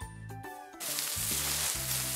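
Background cartoon music with plucked, pitched notes. About a second in, a loud steady hissing sound effect comes in over it, lasting over a second, as sand fills a toy mold.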